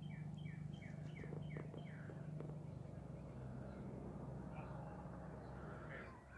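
A songbird singing a quick series of short falling whistled notes, about three a second, which stops about two seconds in. A steady low hum runs underneath.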